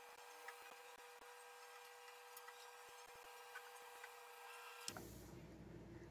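Very faint scraping and a scattering of light clicks from a knife blade run around the inside of a perforated metal tart ring, loosening a baked almond meringue disc, over a faint steady hum.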